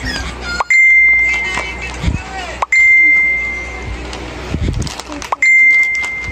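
A bell-like ding rings out three times, about two to three seconds apart. Each is struck sharply as a single high clear tone and rings for about a second and a half before fading.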